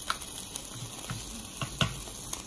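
Food sizzling inside a closed ELBA electric sandwich maker: a steady hiss with scattered crackles and pops.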